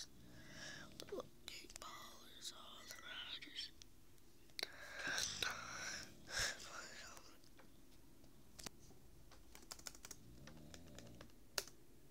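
A hushed whispered voice in the first half, then scattered clicks from a laptop's keys, with one louder click near the end, as a stalled YouTube video is made to load.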